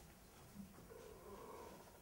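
Near silence: faint room tone with a few soft, indistinct murmurs.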